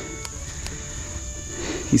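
Steady, high-pitched chorus of insects chirring, with a few faint clicks.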